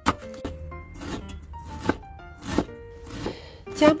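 Knife slicing vegetables on a wooden cutting board: about six crisp strokes, a little under a second apart, over background music.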